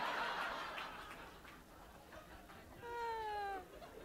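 Laughter dying away, then, about three seconds in, one short pitched vocal sound that falls in pitch.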